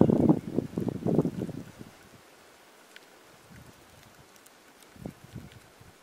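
Wind buffeting the microphone in gusts for about the first two seconds, then a quiet outdoor background with a faint tick and a few soft knocks near the end.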